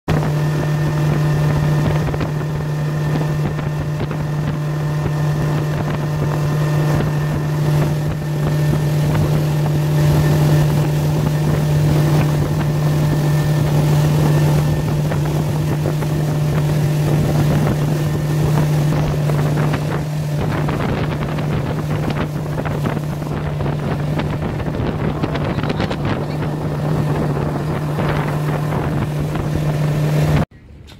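Motorboat engine running at a steady speed, a constant low drone, with wind buffeting the microphone and the rush of water from the boat's wake.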